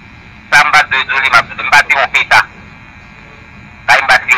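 Speech only: a voice says a few words in French ("je suis désolé, je me…"), then pauses with low steady background noise.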